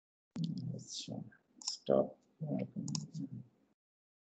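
Speech only: a man's voice speaking a few short words, with dead silence before and after.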